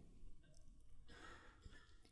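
Near silence: faint room tone, with a faint breath into the headset microphone about a second in.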